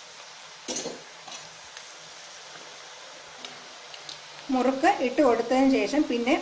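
Rice-flour murukku deep-frying in hot oil in a metal kadai: a steady sizzle, with a short metal clatter about a second in, likely the skimmer against the pan. A woman starts speaking near the end.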